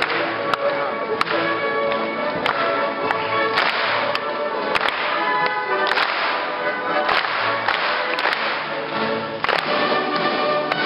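A small classical orchestra of strings playing, cut by loud, sharp cracks at irregular moments, about a dozen across the stretch.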